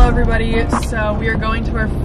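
A young woman talking over the steady low road and engine hum inside a moving car's cabin.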